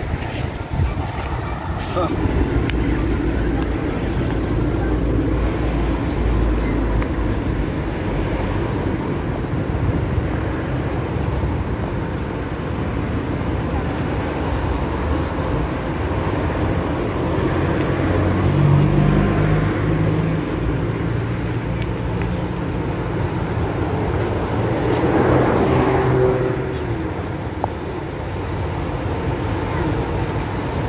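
Steady outdoor background rumble, like distant traffic or wind on the microphone, with indistinct voices a little past the middle and again near the end.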